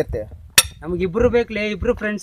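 A man speaking in conversation, with one sharp click about half a second in.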